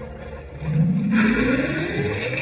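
Film soundtrack played over cinema speakers: a mechanical, engine-like whir that swells up about half a second in and climbs steadily in pitch.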